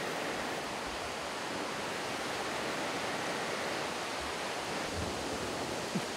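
A river rushing steadily, an even noise with no separate events in it.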